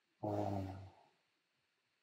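A man's voice saying a single drawn-out "uh" at a steady pitch, lasting just under a second.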